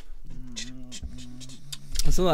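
A quiet, low male voice at a fairly even pitch, in two stretches with a short break about a second in; no words are made out.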